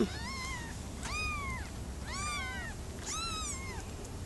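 Newborn kitten mewing: four short, high-pitched mews about a second apart, each rising and then falling in pitch.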